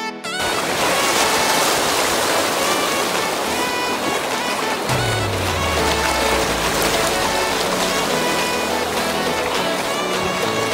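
Rushing whitewater of river rapids, a loud steady hiss, under background music. A deep falling bass tone comes in about halfway.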